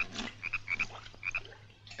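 Frogs croaking in short doubled calls, two or three a second, over a steady low hum.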